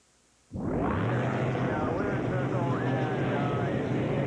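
Unlimited hydroplane engines running as the boats circle on the course, a loud steady drone that cuts in suddenly about half a second in.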